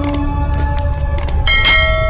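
Background music with a low steady drone and a few light ticks. A bell is struck about one and a half seconds in and rings on.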